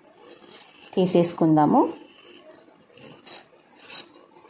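A woman's voice speaks briefly about a second in. Around it, faint scraping and small ticks of a knife blade run along the inside wall of a steel pot to loosen a cake.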